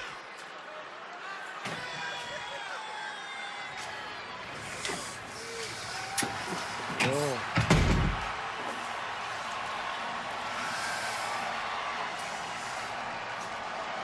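Backstage ambience: a steady background hiss with faint distant voices, broken about eight seconds in by one loud, deep thump.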